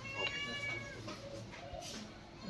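A single high-pitched, drawn-out call lasting about a second, soon after the start, followed by a brief rustle near the end.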